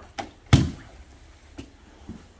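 A heavy thud of a body landing on a grappling mat about half a second in, with a lighter knock just before it and another faint one later, as a grappler drops from knee on belly into an armbar.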